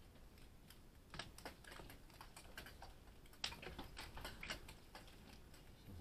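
Hailstones striking hard surfaces, heard as faint, irregular clicks and taps, about two a second.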